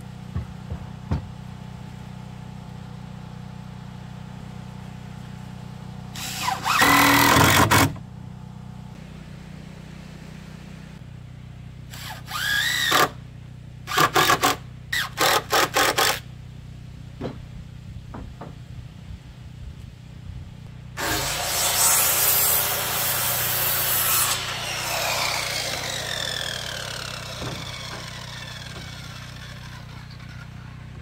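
Cordless drill driving screws into the deck lumber in several bursts, with a short rising whine as the motor spins up. Later a circular saw cuts through a board for a few seconds, and its blade then winds down with a falling pitch.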